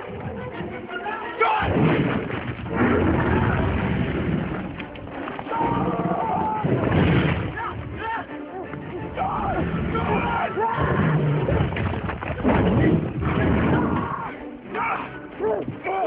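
Film action soundtrack: music mixed with loud booming rumbles that swell up several times, and vocal cries between them.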